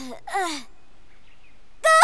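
A cartoon squirrel character's voice whimpering: two short sobs falling in pitch, a brief pause, then a sharp rising cry near the end.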